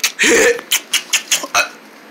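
A high-pitched voice gives a short cry, then a rapid run of about six or seven short, sharp coughs, a play-acted coughing fit. The coughing stops shortly before the end.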